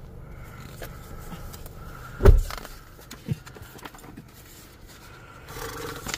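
Handling noise from the phone and menu in a vehicle cab: faint rustling and scraping, with one dull thump about two seconds in and a softer click a second later.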